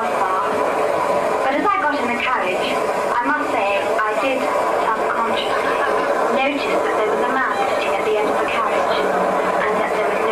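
Recorded radio-play soundtrack played back over a PA: a steady train-like rumble with voices over it, the track the performer mimes to.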